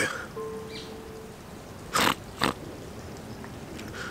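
A man sniffs twice in quick succession, about two seconds in, in a tearful pause while talking about his mother's death. A faint brief hum sounds near the start.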